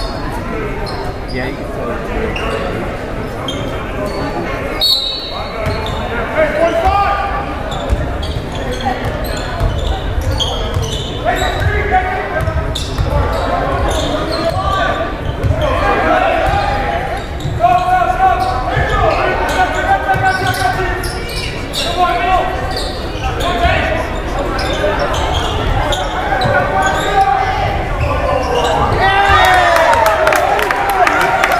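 Basketball game in a large gym: steady crowd chatter and voices from the stands, with the ball bouncing on the court now and then, all with the echo of the hall.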